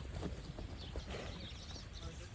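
Faint, scattered hoof steps of a Bonsmara bull walking over dry dirt, over a low steady rumble.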